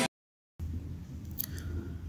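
Half a second of dead silence, then faint microphone room noise with a low hum and two soft clicks shortly before the narration begins.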